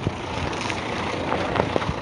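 Road traffic noise with a heavy truck's diesel engine running close by, and a few short knocks and rattles scattered through it.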